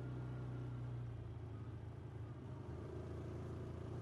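Low, steady engine hum of a motor scooter being ridden, easing slightly after about a second.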